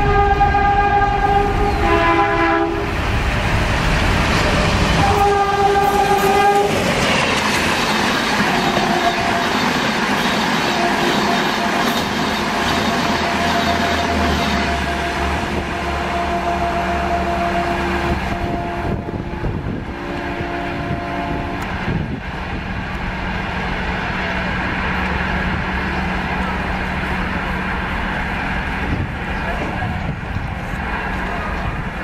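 WDM2A diesel-electric locomotive with an ALCO 16-cylinder engine, sounding its horn in several blasts on two notes as it approaches at speed. The train then runs through with loud wheel clatter and engine rumble, and the horn sounds again about two-thirds of the way through as the train recedes.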